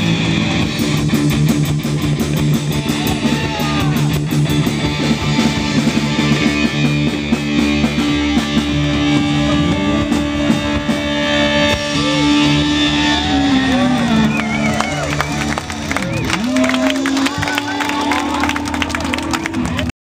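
Live rock band playing through amplifiers: electric guitar and bass holding notes over drums and cymbals. A held low note slides down in pitch about two-thirds of the way in.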